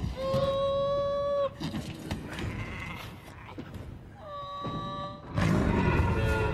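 Baby Tyrannosaurus rex film cries: two long, steady bleating calls, each about a second long, a few seconds apart. Near the end a sudden louder, deeper swell of sound comes in.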